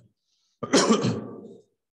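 A man clears his throat once with a rough cough, starting about half a second in and fading over about a second.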